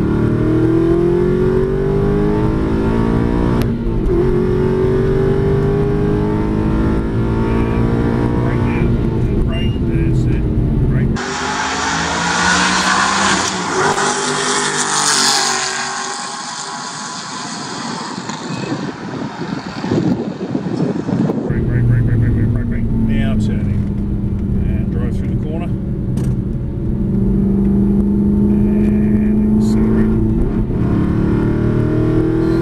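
V8 Aston Martin Vantage engine heard from inside the cabin on track, its note rising and falling as it accelerates and eases off. From about 11 s to 21 s it gives way to a trackside recording: a car passing at speed, with a hissy rush that swells and fades, before the in-cabin engine note returns.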